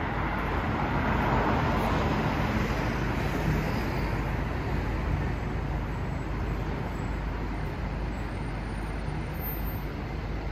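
Road traffic on a city street: a passing vehicle swells to its loudest a second or two in, then fades into a steady traffic hum.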